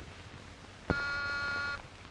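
Desk intercom buzzer sounding once: a steady buzz of just under a second that starts and stops abruptly, calling the man at the desk to answer.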